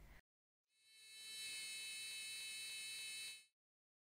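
A littleBits piezo buzzer module sounding a steady high-pitched electronic buzz, driven through an inverter module. It fades in about a second in and cuts off after about two and a half seconds.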